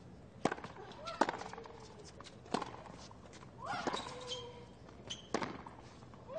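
Tennis rally: a ball struck by rackets back and forth, sharp hits a second or more apart, the last two close together just past five seconds in. A player's drawn-out grunt sounds around four seconds in.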